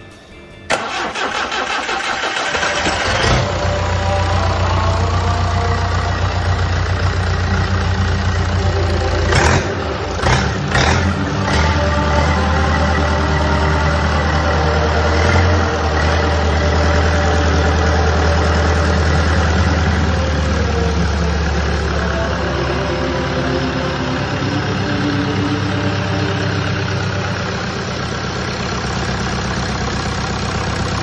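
Freshly rebuilt Perkins 4.236 four-cylinder diesel engine starting on its first start after overhaul: it catches under a second in and settles within a few seconds into a steady idle. A few sharp clicks come around ten seconds in.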